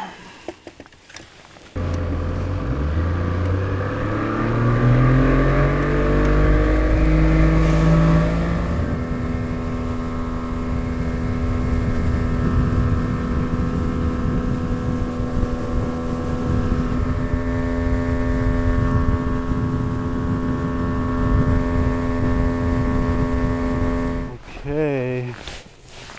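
90 hp Evinrude E-TEC two-stroke outboard pushing an aluminium fishing boat. It comes in suddenly about two seconds in and accelerates, its pitch rising for several seconds. It then runs steadily at planing speed and drops away near the end as the boat slows.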